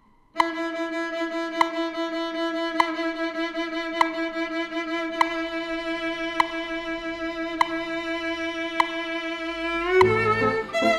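A violin holds one long bowed note with a narrow, even vibrato over metronome clicks about every 1.2 seconds. It is the vibrato pulsed in six-note groups to the beat. Right at the end the pitch slides up into the next note.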